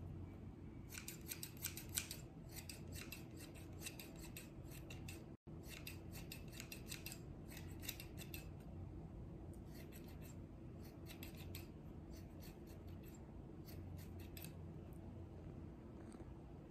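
Haircutting scissors snipping close to the microphone in quick runs of several cuts, in two bursts with a pause of about a second between them. A faint steady hum lies underneath.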